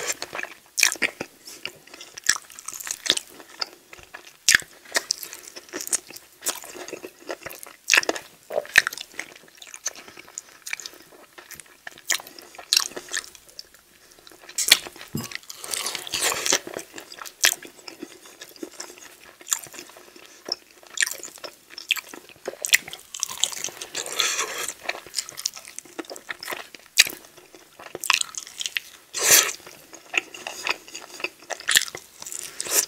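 Close-miked chewing and biting of sauce-glazed chicken wings: wet mouth sounds and many sharp crackles as the meat is bitten and pulled from the bone, with louder bites about halfway through and near the end.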